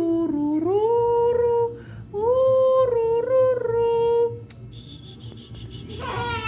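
A person humming a slow lullaby in two long, drawn-out phrases with smooth rises in pitch, to lull a baby howler monkey to sleep. The humming stops before the end, leaving a quieter stretch with a faint, rapid high-pitched chirping.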